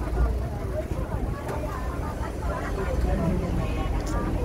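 Low rumble of an open-sided tourist tram riding along, with people talking in the background.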